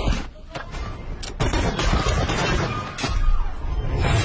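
Action-film soundtrack: a run of hard impacts and crashes, several sharp hits in the first second and a half and another about three seconds in, over a continuous low rumble and dramatic score.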